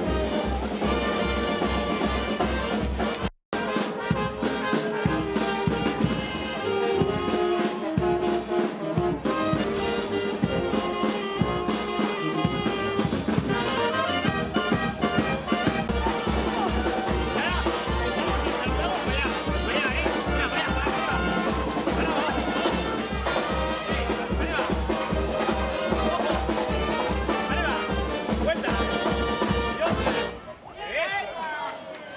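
A street brass band of trumpets, trombones and sousaphone playing a lively dance tune, with a steady low drum beat in the second half. A brief cut to silence falls about three and a half seconds in.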